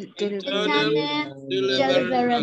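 Voices chanting a word in a drawn-out, sing-song way, two long held phrases with a brief break between them: the term 'deliverables' being recited in a class repetition drill.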